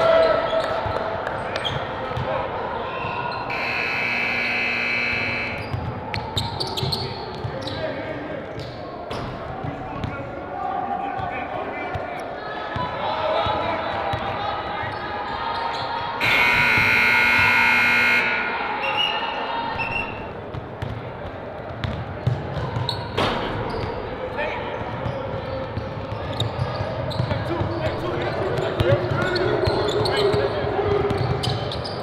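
Basketballs bouncing on a hardwood gym floor during a full-court scrimmage, with players' voices echoing in the hall. A long buzz sounds twice, about four seconds in and again about sixteen seconds in.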